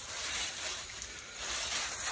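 Steady hiss of water spraying from a garden hose.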